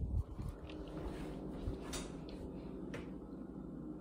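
Handling and movement noise from a phone being carried as someone gets up from bed in a dark room: a soft thump at the start, then a few light clicks and knocks over a low steady hum.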